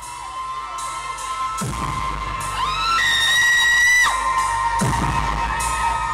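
Live rock band playing through a club PA with a crowd: a steady held tone throughout, a high note that slides up about two and a half seconds in and is held for about a second, a low bass drone coming in, and regular sharp hits.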